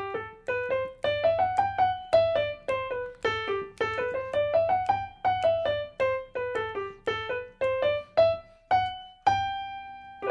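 Digital piano playing a major scale up and down in the right hand several times in an uneven, syncopated rhythm over a steady repeated low note in the left hand. It ends on a held high note near the end.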